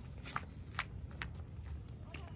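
Faint rustling and a few light, irregular clicks over a low steady rumble.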